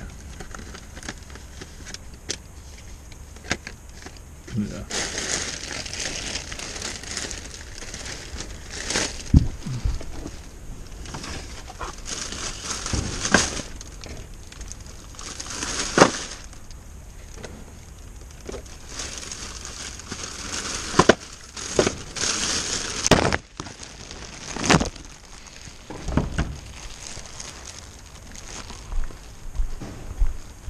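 Plastic bin bags, bubble wrap and wrapping paper rustling and crinkling as hands rummage through a wheelie bin, in irregular bursts with scattered sharp clicks and knocks.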